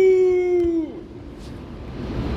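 New York City subway train's air horn sounding one blast. It holds a steady note, then sags in pitch and cuts off about a second in, leaving the lower rumble of the station.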